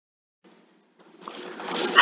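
A person drawing a breath: a hiss that starts about a second in and grows steadily louder, just before speech begins.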